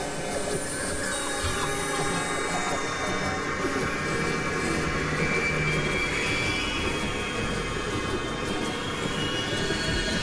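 Dense experimental electronic music: several tracks layered at once into a steady mass of drones, tones and noise, with a thin high whistle joining about four seconds in.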